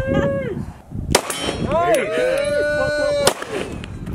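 Two handgun shots about two seconds apart, each a sharp crack, fired on an outdoor range. A high-pitched voice calls out around and between the shots.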